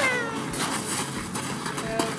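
A young child's short, high-pitched squeal that falls in pitch, during excited play.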